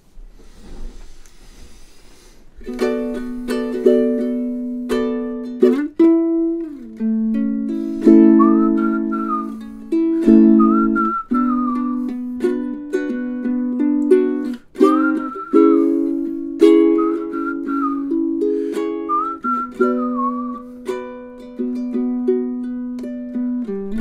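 Ukulele strumming chords, starting about three seconds in. From about eight seconds a whistled melody joins it in five short phrases.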